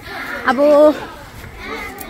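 A young woman speaks a single short word, with children's voices at play in the background.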